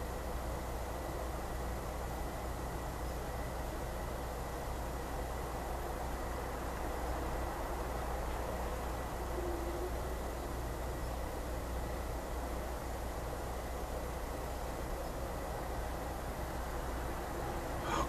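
Steady background noise with a low hum and a thin, steady high tone, and one faint, brief low tone about nine and a half seconds in.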